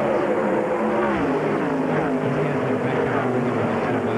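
A pack of ARCA stock cars' V8 engines racing at full throttle, several engine notes overlapping, with pitches sliding down as cars go past.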